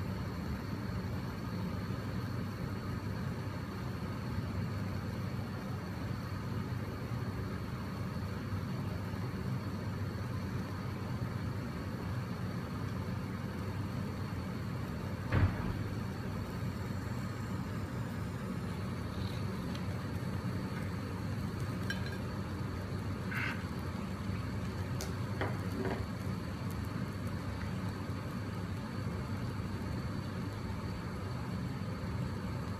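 Steady low background hum, with one sharp click about halfway through as a small handheld gas torch is lit; a few faint ticks follow.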